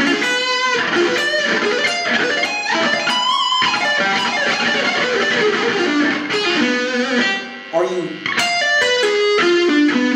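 Ernie Ball Music Man Silhouette electric guitar playing fast diminished arpeggios, sweep-picked and moved up a minor third at a time. There is a brief break about three-quarters of the way through, then a run of notes stepping downward near the end.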